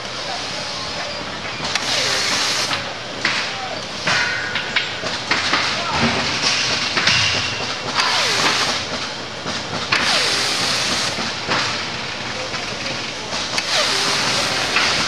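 Pneumatic hand tool on an air hose fastening a pillow-top layer to a mattress edge, giving repeated bursts of air hiss, each up to about a second long, over steady factory noise.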